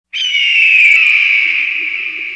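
Studio-logo intro sound: a loud, high cry that starts suddenly, falls slowly in pitch and fades, with a lower steady tone joining after about a second.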